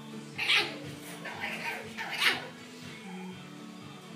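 French Bulldog puppies yipping as they play, with two loud high yips, one about half a second in and one just after two seconds, and smaller yips between them.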